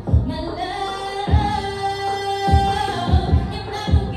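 A woman singing R&B live into a handheld microphone over a backing beat, with deep kick-drum thumps every second or so. A long held note runs through the middle.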